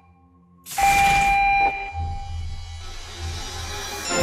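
Game-show sound effect: after a brief hush, a sudden loud hissing whoosh with a held tone, settling into a quieter tense music bed.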